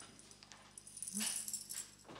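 Faint jingling of a tambourine being handled and lowered just after the song ends, with a brief squeak about a second in.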